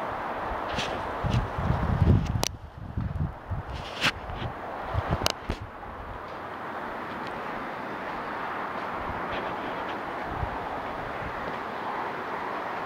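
Strong wind blowing in gusts, with low rumbles of wind buffeting the microphone and several sharp clicks in the first five seconds, then a steadier rush of wind.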